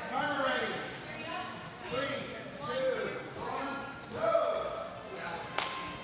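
Indistinct voices talking throughout, with a single sharp click near the end.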